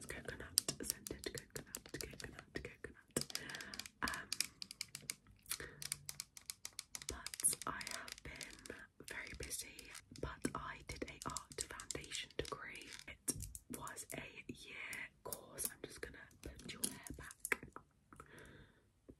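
Long fingernails tapping and clicking rapidly on a hard plastic bottle, in quick irregular runs.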